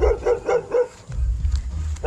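A small dog yapping in quick, repeated barks, about six a second, with a brief pause around the middle.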